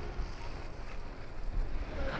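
Wind rumbling on the microphone, a steady low noise with no distinct events.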